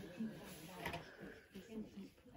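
Faint chatter of voices in the background, with a light click a little under a second in.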